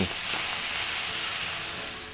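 Ribeye steaks sizzling in a hot stainless-steel skillet: a steady frying hiss that eases off a little near the end.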